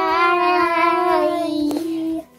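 A child's singing voice holding long, drawn-out notes that step slowly down in pitch, with a short click near the end.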